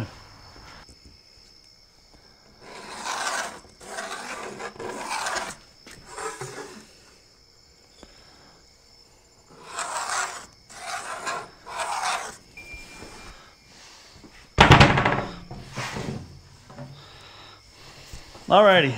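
A series of rubbing, scraping strokes on a plywood sheet as a line is laid out along a metal straightedge, each stroke about half a second to a second long. A loud clatter comes near the end.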